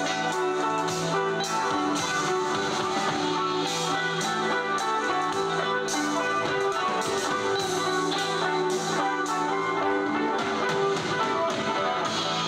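A live rock band playing: guitar over a drum kit with regular cymbal hits, in a steady groove.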